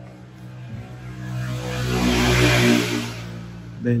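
A vehicle passing by, its sound swelling to a peak about two and a half seconds in and then fading.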